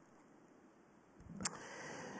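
A pause in a man's speech into a microphone: near silence, then a faint intake of breath and a single sharp click about a second and a half in, just before he speaks again.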